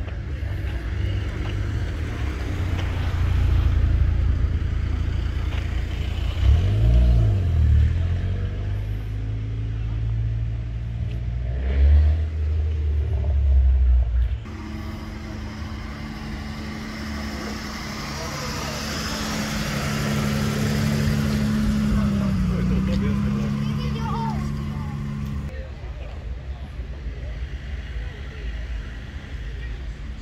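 A car engine revving in short blips with loud peaks in the first half. After a cut, a car's engine runs steadily at low speed as it rolls past, its pitch dipping briefly, then fading to quieter background.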